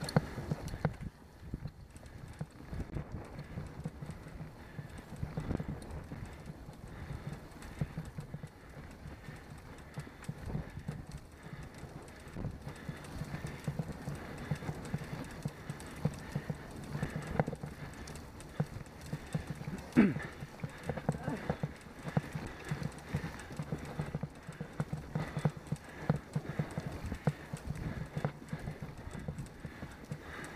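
A road bicycle ride heard from the bike: dense, irregular knocking and rattling from road vibration over a steady low rumble of tyres and wind. One sharp, louder click stands out about two-thirds of the way through.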